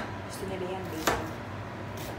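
A kitchen knife chopping raw bacon on a plastic cutting board, with one sharp chop about a second in.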